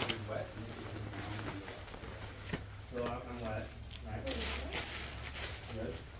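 Faint, indistinct talk from several people over a steady low room hum, with a short burst of rustling a little past four seconds in.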